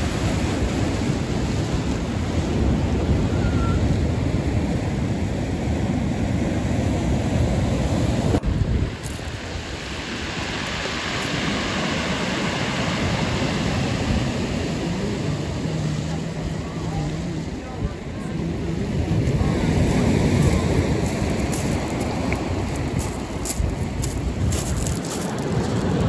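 Sea surf: waves breaking and foaming over rocks and shingle, with wind buffeting the microphone. The sound changes abruptly about nine seconds in.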